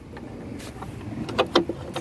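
A few light clicks and knocks from hands screwing a plastic tail-light retaining nut back on behind the trunk trim, with the sharpest knocks about one and a half seconds in. Steady low background noise runs underneath.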